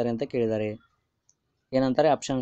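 A man's voice speaking, breaking off for about a second midway, with one faint click in the pause.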